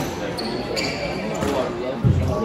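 A squash rally in a reverberant court: the hard rubber ball cracks off rackets and walls several times, with players' footsteps on the wooden floor. Spectators' voices murmur underneath.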